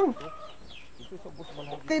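Faint chickens clucking in the background, a few short falling calls in the lull between a man's sentences.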